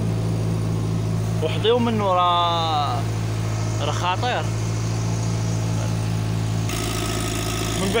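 Gas-fuelled irrigation pump engine running steadily with a constant low hum while it pumps water.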